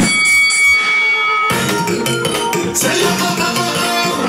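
A boxing bell struck once, ringing for about a second and a half, then a live band comes in playing soca music loudly.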